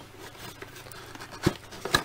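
Quiet handling of a cardboard toy box as it is being opened, with two short sharp clicks, one about a second and a half in and another just before the end.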